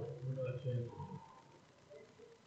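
A person's low voice talking for about the first second, then trailing off into a pause.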